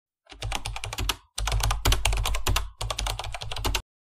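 Rapid computer-keyboard typing clicks in three runs with brief pauses between them, stopping just before the end.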